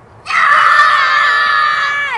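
A young child screaming in play: one long, loud, high-pitched scream that starts about a quarter second in and holds steady for nearly two seconds.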